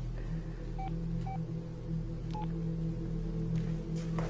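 Phone keypad beeps: four short key tones in the first two and a half seconds as a number is dialled, over a steady low hum.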